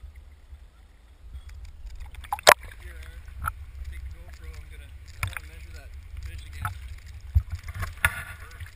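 Shallow river water moving around a camera held in and at the surface: a steady low rumble with splashes and sharp knocks and clicks. The loudest knock comes about two and a half seconds in.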